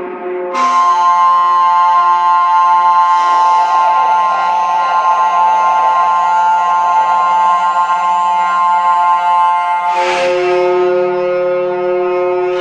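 Experimental electronic (IDM) music: layered sustained synthesized tones holding long drone-like chords that shift about half a second in, around three seconds in, and again near ten seconds in.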